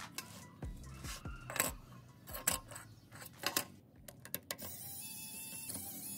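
Precision metal tools clicking and tapping on a smartphone's internal parts: a quick string of sharp ticks during the first four and a half seconds, then a steady faint hiss.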